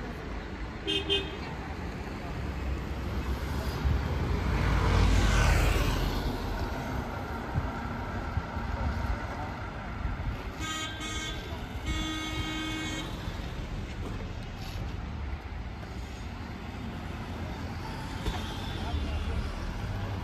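Street traffic rumbling steadily, with a vehicle passing close about five seconds in, the loudest moment. A vehicle horn sounds twice, briefly, around ten and twelve seconds in.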